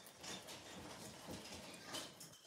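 A cat licking a paste treat from a squeeze sachet: faint, irregular licking and mouth sounds.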